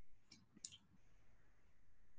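Near silence: room tone, with two faint short clicks within the first second.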